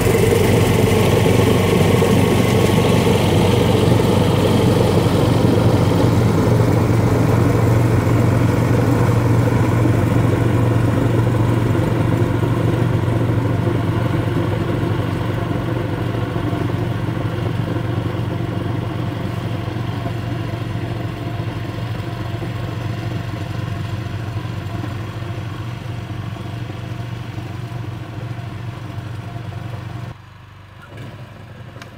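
Snowblower engine running steadily while throwing snow, with the hiss of the spray loud at first. The engine grows gradually fainter as the machine moves away.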